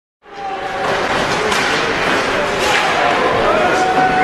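Silent for a moment, then ice hockey game sound fades in: a steady hiss of skates on the ice under a low crowd murmur in the arena.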